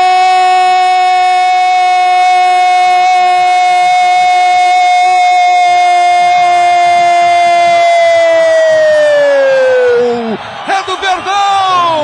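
A Brazilian radio football commentator's long, drawn-out "goool" cry for a goal, held on one steady high note for about ten seconds, then sliding down in pitch and breaking off, followed by more excited shouting near the end.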